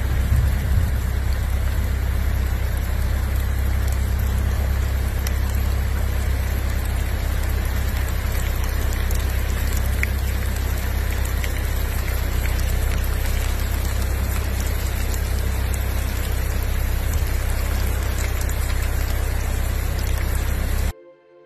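Heavy rain and fast-flowing floodwater rushing across a road: a loud, steady noise with a strong low rumble underneath.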